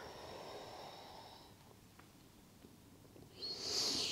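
A woman's audible breath in, a short hiss that swells near the end just before she speaks; otherwise near silence.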